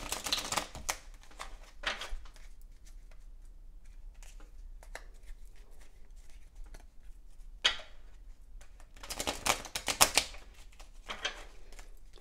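A deck of oracle cards being shuffled by hand: bursts of quick papery card flicks and patters, with pauses between. The busiest, loudest burst comes about nine to ten seconds in.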